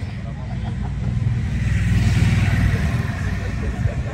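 A road vehicle passing by: a low rumble with tyre-and-engine noise that builds to its loudest a little past halfway through, then eases off.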